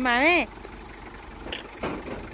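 A single short word in a high voice at the very start, then quiet outdoor background with a faint steady low rumble and a soft knock near the end.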